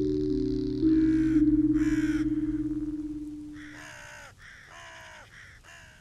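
A corvid cawing about five times, the harsh calls spaced roughly a second apart and growing fainter, over low sustained ambient music notes that step down in pitch and fade out about two-thirds of the way through.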